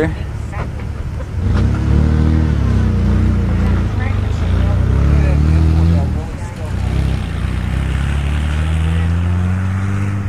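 A motor vehicle's engine running close by and accelerating. Its pitch rises and drops twice in the first six seconds, as if shifting gears, then climbs slowly near the end.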